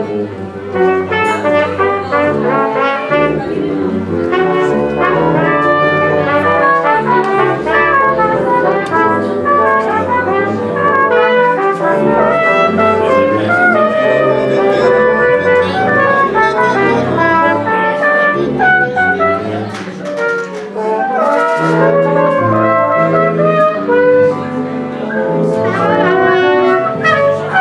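Ensemble music led by brass, trumpets and trombones over a moving bass line, playing continuously with a brief dip in level about three quarters of the way through.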